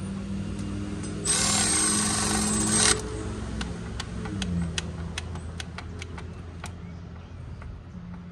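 Cordless electric ratchet spinning a bolt in one burst of about a second and a half, then a string of light, irregular clicks as the fastener is worked further.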